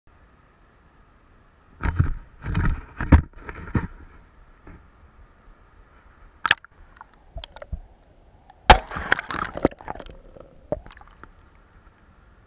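Handgun shots fired into a river: four loud reports in quick succession, about half a second apart, then two more sharp cracks a few seconds later, the last one the loudest.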